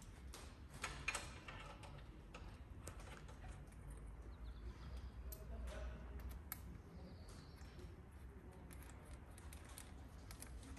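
Faint, scattered small metallic clicks and ticks of a threaded transmission-flush adapter being handled and screwed by hand into a car gearbox's oil port, over a low steady hum.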